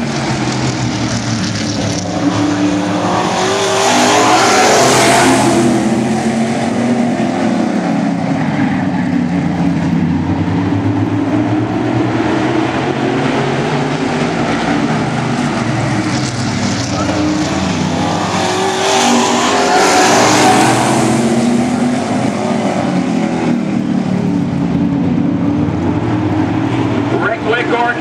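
A pack of stock cars racing around a short oval track, engines running hard throughout. The sound swells twice as the pack sweeps past, about five seconds in and again about twenty seconds in, each time rising and then falling away.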